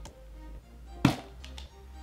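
The plastic screw-top lid of a tub of Eco Styler gel being twisted off, with one sharp knock about a second in, over background music.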